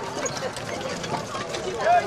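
Indistinct voices of people chatting at the trackside, with one voice louder near the end.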